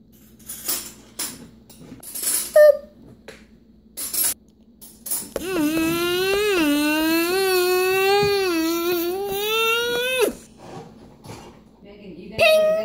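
Small plastic toy pieces clicking and rattling as they are handled, then a child's voice holding one long wavering note for about five seconds, imitating a blender running.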